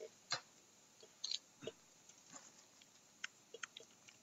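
Faint, irregular clicks and taps of a computer mouse and keyboard, about half a dozen spread over the four seconds, picked up over a video-call connection.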